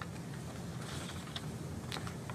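Quiet room tone: a steady low hum with a few faint clicks, the clearest just before the end.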